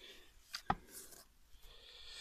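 Shovel blade working soaked paper in a plastic bin: two sharp knocks a little after half a second in, then brief scraping and rustling.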